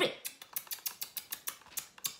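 A quick run of short kissing smacks made with the lips, about eight a second for most of two seconds, standing for the prince's kiss.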